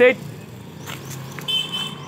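Quiet outdoor background with a steady low hum of distant traffic, a brief voice right at the start and a short high-pitched tone about one and a half seconds in.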